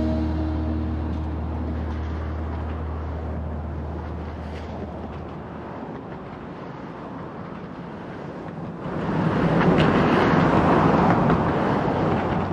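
The last notes of a rock song die away in the first second, leaving a low steady hum and a noisy outdoor rumble. The rumble swells suddenly louder about nine seconds in.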